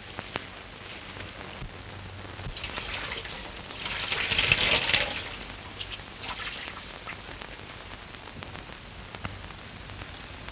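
Crackling hiss of an old 1930s optical film soundtrack, sprinkled with small clicks, with a louder rush of noise about four to five seconds in.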